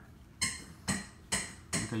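Four light, sharp knocks or clinks of a hard object, about two a second.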